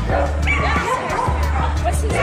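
A dog barking and yipping over music with a steady, repeating bass line.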